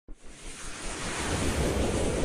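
Intro sound effect: a rushing, wind-like whoosh over a low rumble, swelling up from silence.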